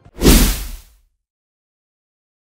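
A single whoosh transition sound effect with a deep low boom, under a second long and fading out, marking the news outro logo.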